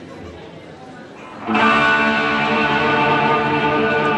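Electric guitar through an amplifier, struck once about a second and a half in and left to ring out steadily.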